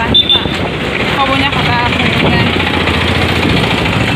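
Street traffic: vehicle engines running steadily, with a brief high tone near the start and faint voices of passers-by.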